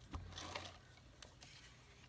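A pink plastic craft tool handled over card stock: a low knock just after the start, then a few faint mechanical clicks.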